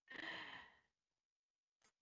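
A woman's short, faint breathy exhale, like a sigh, as her laughter trails off, lasting under a second.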